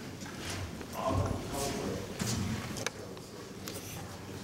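Hard-soled footsteps on a stage as a person walks a few paces, with a few small clicks and brief low voices.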